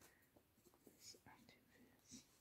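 Near silence, with faint soft rustles and a few small clicks as hands handle a doll's cloth outfit, a few of them together about a second in.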